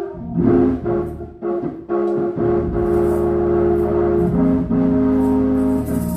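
Church organ music with long held chords, the held pitch stepping down about four seconds in.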